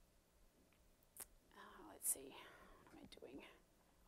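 Faint muttered speech, close to a whisper, starting about a second in: a few quiet words with sharp 's' sounds.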